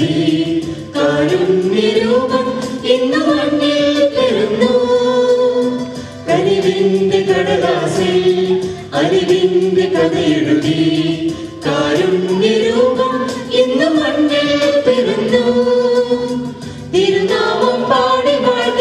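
A small mixed choir of women and men singing a Christmas song into microphones, in phrases of two to three seconds with short breaks for breath between them.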